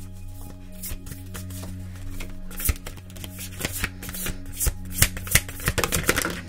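A large tarot deck being shuffled by hand: a string of irregular card snaps and taps, sharper from about halfway through.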